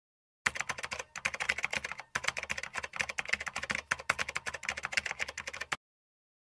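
Rapid computer-keyboard typing sound effect, many key clicks a second. It starts about half a second in, breaks briefly twice near one and two seconds in, and stops just before the end.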